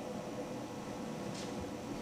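Steady room tone of a small room: an even hiss with a faint hum of air conditioning. A faint short hiss comes about one and a half seconds in.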